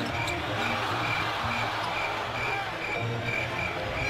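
Basketball game broadcast sound: arena crowd noise under music, with a high note repeating about three times a second, and a basketball bouncing on the hardwood court.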